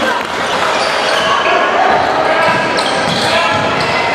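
Live sound of a basketball game in a large gym: voices of players and spectators echoing through the hall, with a basketball bouncing on the hardwood floor.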